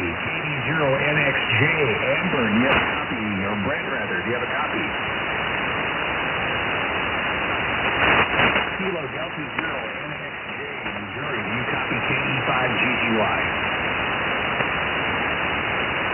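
Shortwave ham radio audio on 3.916 MHz single sideband: weak, hard-to-read voices under steady band noise and static.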